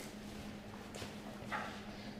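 A few soft footsteps on a hard floor, over a steady low hum.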